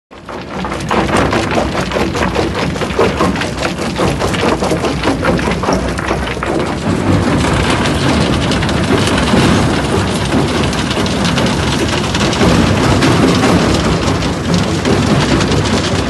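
Stone crushing plant running: a dense, loud clatter of river stone tumbling through the feed hopper and along the conveyors, over the steady noise of the machinery. It cuts in suddenly at the start.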